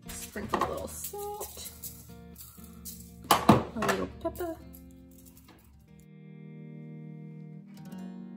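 Acoustic guitar background music. For the first six seconds it is overlaid by the crinkle and rustle of aluminium foil as spaghetti squash halves are picked up and set down on a foil-lined baking sheet. The loudest crackle comes a little after three seconds in.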